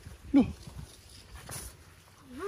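A single short vocal cry that slides steeply down in pitch, followed by faint rustling.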